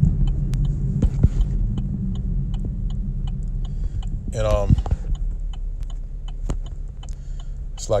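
Steady low rumble and hum throughout, with scattered light taps and a short mumbled voice about halfway through.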